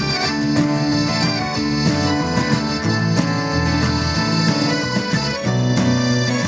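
Live folk band playing an instrumental passage: a piano accordion holds chords over strummed acoustic guitar, electric bass notes and light clicking wooden hand percussion.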